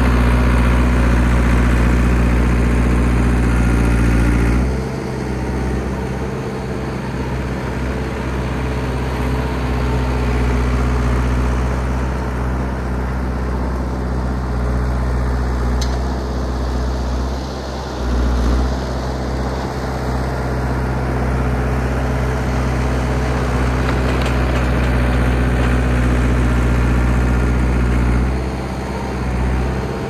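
Old John Deere crawler bulldozer's engine running steadily while the dozer pushes snow. Its sound drops about five seconds in, comes back louder around eighteen seconds, and dips briefly near the end.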